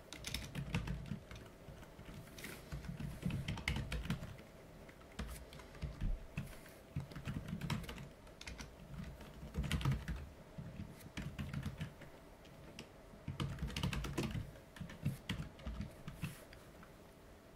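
Typing on a computer keyboard: bursts of quick keystrokes separated by short pauses.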